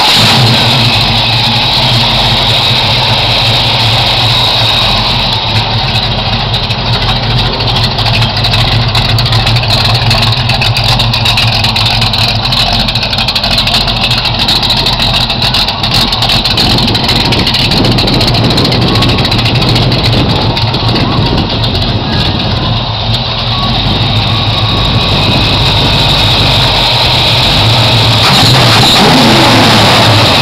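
Pontiac Trans Am's 455 V8 running at a steady idle, loud and even.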